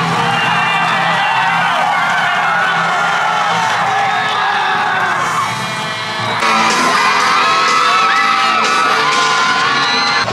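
High school football crowd cheering, shouting and whooping as the team runs onto the field, with music playing underneath. The cheering gets louder about six and a half seconds in.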